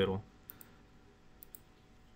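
A few faint computer mouse clicks against quiet room tone: a pair about half a second in and another pair about a second and a half in.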